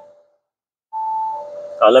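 Car cabin climate-control fan running after a brief silence: a steady whine over a faint rush of air that drops to a lower pitch partway through.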